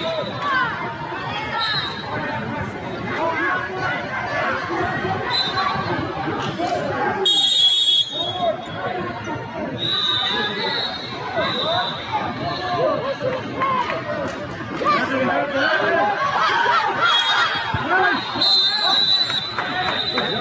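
Overlapping voices of many people talking and calling out in a large hall, with short high-pitched squeaks recurring through it and a louder high sound about seven seconds in.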